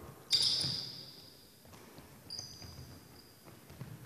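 Basketball shoes squeaking on a hardwood gym floor as players cut and jump in a drill: a sharp high squeal about a third of a second in that fades over a second, and a shorter one about halfway through. Light thuds of feet and the ball run between them.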